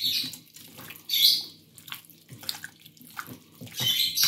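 A gloved hand squishing and mixing raw chicken pieces in a white marinade in a glass bowl. It makes wet squelching sounds in irregular bursts, with a louder one near the start, another about a second in and another near the end.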